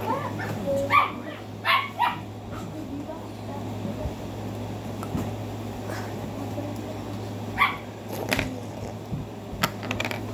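A dog barking in short bursts, three barks in the first couple of seconds and a few more near the end, over a steady low hum.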